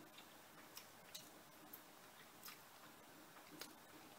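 Near silence: a person chewing a mouthful of food with the mouth closed, with a few faint, irregular clicks.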